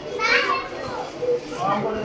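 Chatter of several voices, with children's voices among them and a loud, high-pitched call or shout a quarter of a second in.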